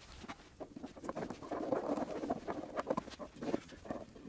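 Wood glue being squeezed from a bottle and worked over a pine board with a glue brush: a busy run of short, wet, sticky clicks and smacks that thickens about a second in.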